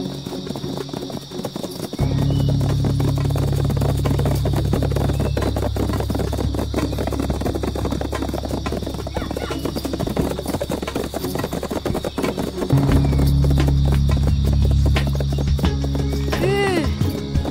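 A horse's hooves clip-clopping along a forest trail, under dramatic background music whose sustained low tones come in about two seconds in and grow louder near the end.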